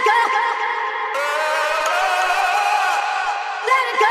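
Sung vocal samples with delay and reverb playing over a sustained synth pad made of a looped string sample layered with an FM pad of detuned sine waves. Short vocal phrases come near the start and near the end, with one long wavering sung note between them that slowly rises and then falls.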